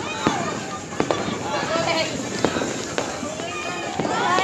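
Fireworks and firecrackers going off at a distance, about six sharp bangs at irregular intervals, over a continuous hubbub of voices.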